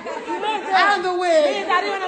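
People talking, with voices overlapping as chatter.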